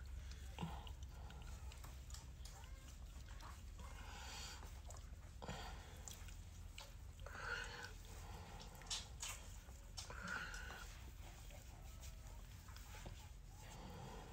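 Faint sounds of fingertips rubbing sunscreen lotion into facial skin, over a low steady hum, with a few short soft noises scattered through.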